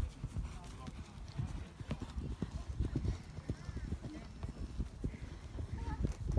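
A horse's hoofbeats as it canters over a sand arena surface: a run of short, irregular thuds.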